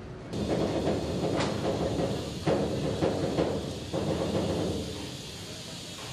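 Railway transporter car carrying a Soyuz rocket rolling along the track: a low rumble with several sharp metallic clanks through the middle, easing off near the end.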